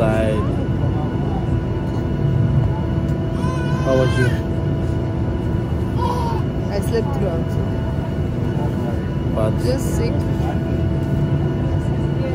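Airliner cabin noise: a steady low rumble from the aircraft with a constant hum over it.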